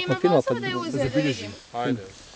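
People talking: speech from more than one person, with a short pause near the end.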